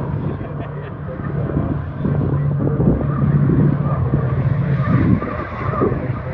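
Racing cars' engines running on the circuit: a steady low drone that grows louder about two seconds in.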